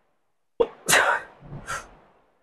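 A man's forceful breaths out while pressing a seated chest press machine: a sharp catch, then two short hissing exhalations close together about a second in, the sound of effort under load.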